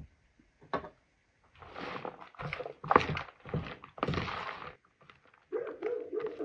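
A dog giving five short, breathy huffing woofs over about three seconds, then starting a high, wavering whine near the end.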